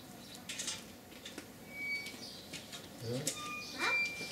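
A few short, high bird chirps, with faint rustles and a man's brief "huh?" near the end.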